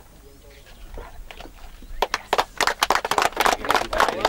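A group of people clapping, starting about halfway through as a loud, irregular patter of hand claps.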